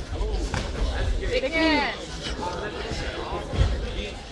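Taekwondo sparring: a shout that rises and falls in pitch in the middle, and a single heavy thud near the end from a strike or a foot landing hard on the mat.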